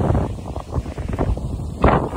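Wind buffeting the microphone: a low rumble with gusty thumps, strongest just before the end.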